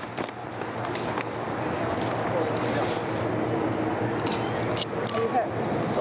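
City street noise: traffic rises over the first couple of seconds and then holds steady with a low hum, with faint voices and a few sharp clicks on top.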